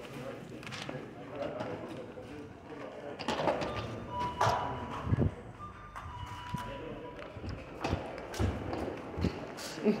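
Indistinct voices in the room, with a few scattered knocks and thumps in the second half and short steady beeps about halfway through and again a couple of seconds later.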